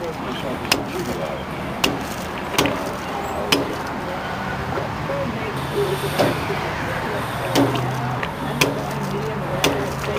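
Gasoline pumping through a fuel nozzle into a car's filler neck, a steady rush of flow, with a low pump hum coming in about halfway and several sharp clicks scattered through it.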